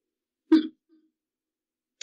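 A person clears their throat once, briefly, about half a second in.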